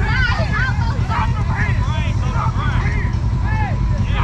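Off-road vehicle engines running with a steady low rumble, while a group of people shout and call out to each other over them.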